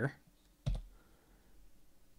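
A single computer-keyboard keystroke click a little after the start, typing a comma; otherwise faint room tone.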